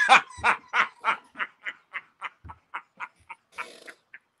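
A man laughing hard in a long run of quick, breathy bursts, about four a second, growing fainter as it goes, with a longer breathy sound near the end.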